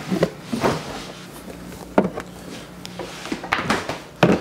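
Refrigerator door being opened and shut, with a few separate knocks and clunks as a lidded plastic container is handled in and out. A low steady hum runs under the knocks for a few seconds.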